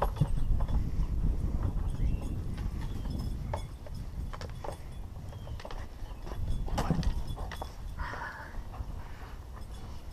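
A towel rubbing over a wet German shepherd's coat, with dense rubbing and handling noise close to the microphone and scattered knocks and clicks. The noise is heavier in the first few seconds.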